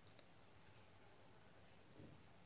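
Near silence: room tone with a few faint clicks in the first second, the handling sound of hands working a steel crochet hook through yarn.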